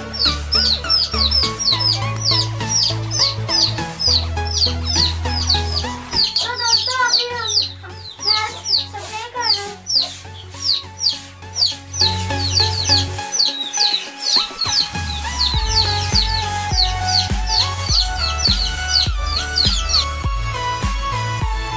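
Young domestic chicks peeping: a continuous stream of short, high peeps that fall in pitch, several a second, over background music with steady bass notes.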